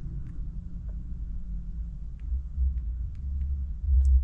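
Low steady rumble inside a stationary car's cabin, with a few faint light ticks.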